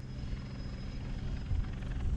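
Helicopter rotor and engine running steadily: a low rumble with a constant hum.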